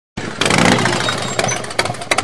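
A loud vehicle engine running hard, harsh and crackling with irregular sharp pops over a low pulsing note, cutting in suddenly just after the start.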